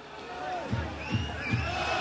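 Football ground ambience: crowd noise with scattered shouts, a few thin whistle-like tones in the second half.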